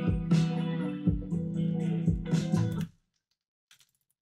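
A programmed beat playing back: a plucked, guitar-like melody over steady bass notes and kick drum hits, put through a Gross Beat 'vinyl off' effect that is meant to sound like a record being shut off. The music stops dead about three seconds in.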